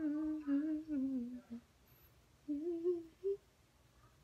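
A woman humming a tune with her lips closed, in two short phrases: the first trails off about a second and a half in, the second runs from about two and a half to three and a half seconds.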